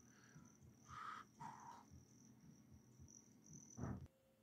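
Near silence: a faint, steady, high-pitched chirring, with a short thump near the end.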